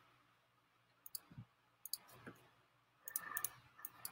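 Faint, scattered clicks from a computer being operated, single clicks at first and then a quicker run of them near the end.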